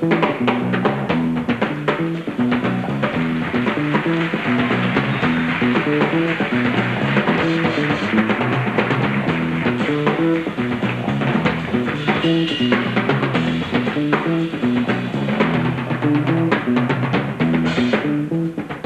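Live soul-funk band: a fatback drum-kit groove playing over a repeating electric bass riff.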